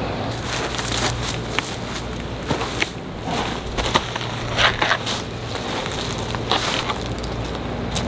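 Irregular crunching and rustling of dry leaves and brush, with scattered short crackles, as a potted wild lime shrub in a plastic nursery pot is moved into place by hand.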